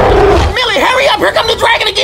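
A film dragon roaring: a deep rumble in the first half second, then a string of pitched, bending growls and cries, mixed with a voice.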